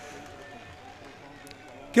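A pause in a man's speech into a public-address microphone, leaving a faint background of distant voices and hum, with a couple of small clicks about one and a half seconds in. His speech starts again right at the end.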